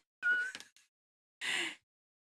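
A woman laughing: a short, high-pitched squeal of laughter, then a breathy laugh about a second and a half in.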